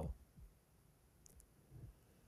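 Near silence: room tone, with a faint click or two.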